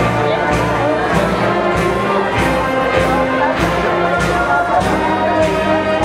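Brass-led band or orchestral music playing a slow processional march with a steady beat about twice a second, over a murmur of voices.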